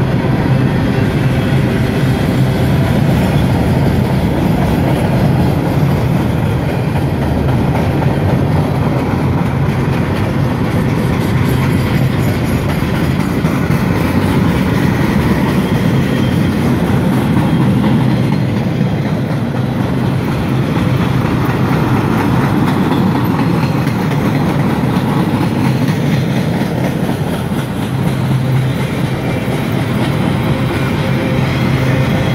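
Freight cars of a CSX maintenance-of-way train rolling past, first gondolas and then flatcars loaded with track machinery: a steady, loud rumble of steel wheels on rail.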